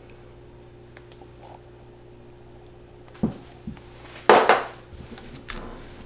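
A faint steady hum, then about three seconds in a couple of light knocks and a brief, louder clatter of kitchen equipment handled on a stainless steel worktable.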